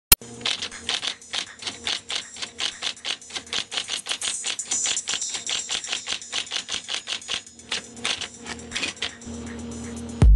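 Rapid typewriter keystrokes, several sharp strikes a second, over a faint steady tone. The typing stops a little after 9 s, leaving a steady low hum.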